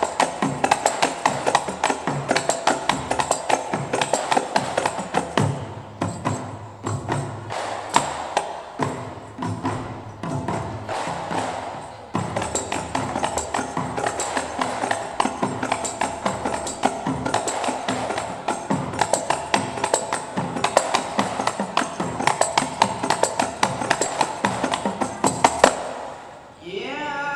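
Minangkabau indang music: small hand-held indang frame drums struck in a fast, dense, steady rhythm, with deeper drum strokes underneath for a stretch in the middle.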